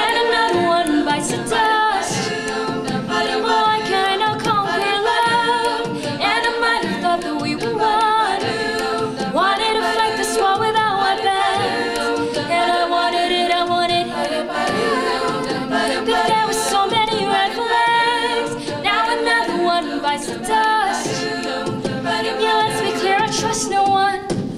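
A cappella vocal group singing in harmony, a female lead voice over the other singers, with no instruments.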